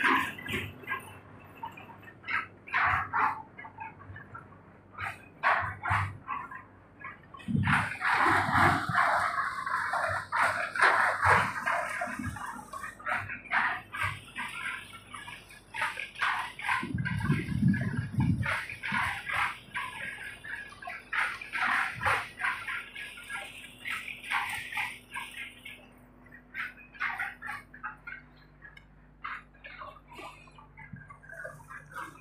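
Animal calls, many short and irregular ones in quick succession, with a cluster of deeper sounds about halfway through.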